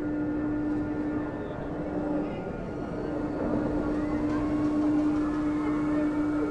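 Spinning amusement ride machinery running with a steady hum, amid crowd noise and voices, getting a little louder in the second half.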